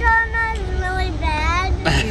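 A young child singing wordless, held high notes that slide up and down, over a steady low rumble.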